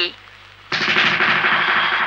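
A film sound-effect crash: a sudden loud, noisy hit about two-thirds of a second in that holds and slowly fades.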